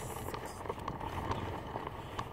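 Toy doll stroller pushed across asphalt: a steady low rolling rumble with light, regular ticks about three a second from the walking and wheels.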